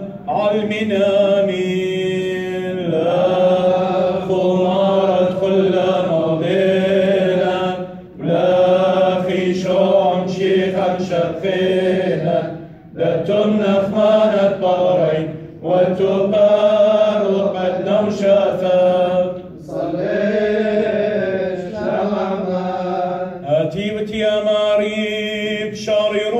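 Male voice chanting the Church of the East liturgy in long, held sung phrases on a steady pitch, broken by a few brief pauses.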